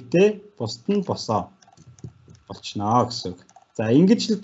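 A man speaking in short phrases, with light computer keyboard or mouse clicks in a pause about halfway through.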